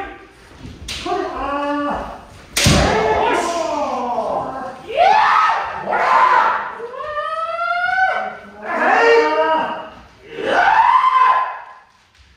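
Kendo fencers' kiai: a series of long, drawn-out shouted cries from several voices, overlapping, sliding up and down in pitch. One sharp impact sounds about three seconds in.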